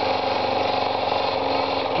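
Model stationary engine with a large flywheel running fast: a steady mechanical whirr with rapid, fine clatter.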